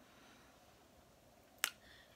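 Quiet room tone broken by a single short, sharp click about one and a half seconds in.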